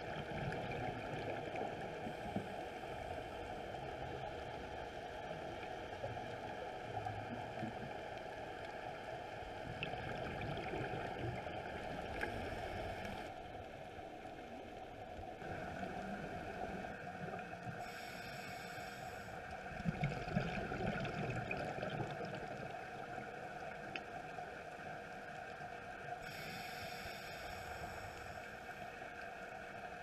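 Underwater sound from a scuba diver's camera: a steady rushing hum, broken several times by brief hissing bursts of bubbles from the diver's regulator.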